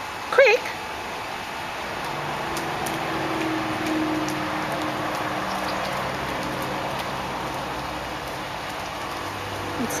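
A flat-coated retriever gives one short whine about half a second in. After it a steady background noise swells and holds, with a low hum through the middle.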